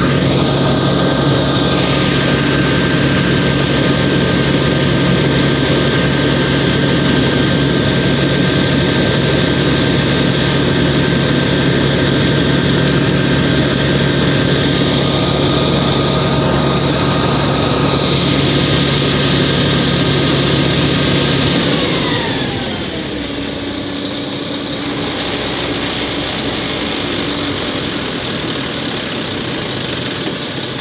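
Heavy truck's diesel engine held at steady high revs under load, then the revs drop sharply about two-thirds of the way through and settle to a lower steady note.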